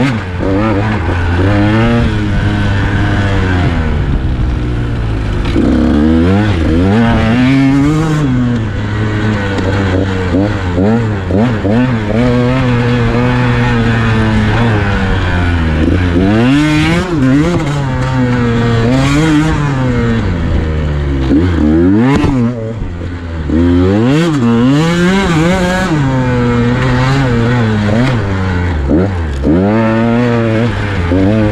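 KTM 150 XC-W two-stroke single-cylinder dirt bike engine under way, revving up and dropping back again and again as the throttle is worked, its pitch rising and falling every few seconds.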